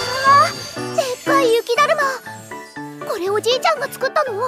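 A woman's voice speaking with lively, high pitch in the anime's original Japanese dialogue, over light background music.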